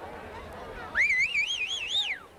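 A high, whistle-like tone, warbling about five times a second, starts halfway through. It climbs in pitch over about a second and then falls away. Faint voices murmur before it.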